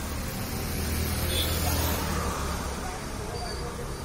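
Motor scooter passing close by, its engine and tyre noise rising to a peak about a second and a half in and then fading, over street traffic noise and voices.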